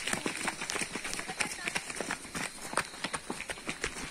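Footsteps of a group of runners on a gravelly dirt road: many quick, irregular steps, sandals slapping and crunching on the gravel.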